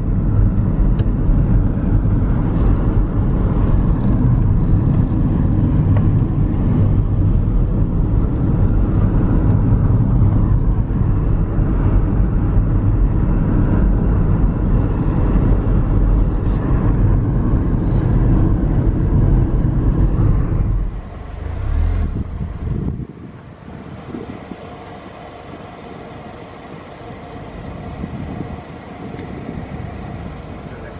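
Inside a moving car: steady low rumble of engine and tyre road noise while driving. About two-thirds of the way in it falls away to a much quieter steady hum.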